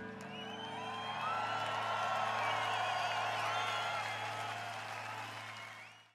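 Large outdoor concert crowd cheering and whistling over a steady held low note from the band's sound system, fading out at the end.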